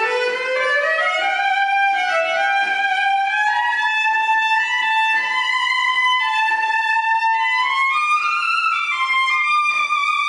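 Cello bowed in a slow, legato melody whose held notes climb step by step higher through the passage. It is played to test the instrument's sound after the bridge was adjusted where a string had sunk too deep into it.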